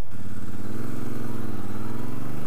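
Triumph Bobber Black's 1200cc liquid-cooled parallel-twin engine, through its stock exhaust, pulling away from a stop. The engine note swells, dips about one and a half seconds in, then climbs again.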